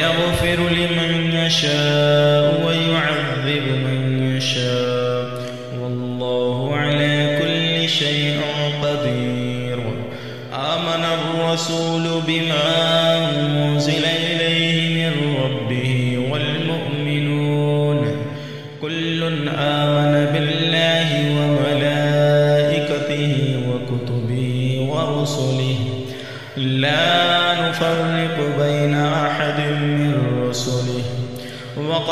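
A man's voice reciting the Quran in Arabic in a slow, melodic chanting style, holding long notes that step up and down in pitch, with short breaks for breath every few seconds.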